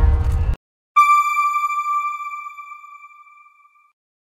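Background music stops abruptly about half a second in. After a brief silence, a single clear electronic ping sounds and fades out over about three seconds: the end-card chime of the news logo.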